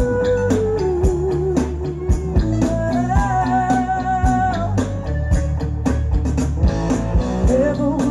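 Live band music: electric guitar, bass and drums playing a slow, steady beat, with a woman singing long held notes into a microphone.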